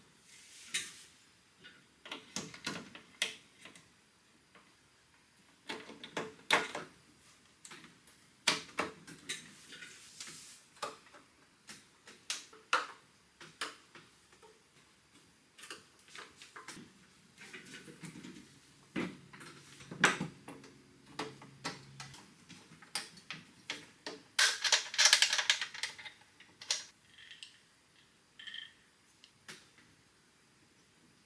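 Case panels of a Honda EM400 portable generator being fitted back on and fastened by hand: scattered clicks, taps and knocks, with a longer clattering scrape about 25 seconds in.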